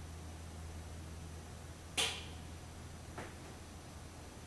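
Low steady hum with a short sharp swish about two seconds in and a fainter one about a second later.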